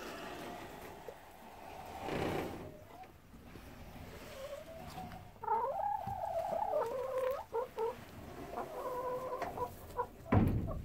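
Brown hens calling: a run of wavering, drawn-out clucking calls from about five seconds in, with more steady calls near the end. A short rustling noise comes about two seconds in.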